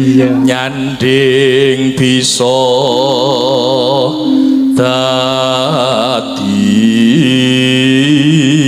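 A solo voice singing a slow Javanese melody in long phrases with wide vibrato, over held accompaniment notes that step to a new pitch a few times.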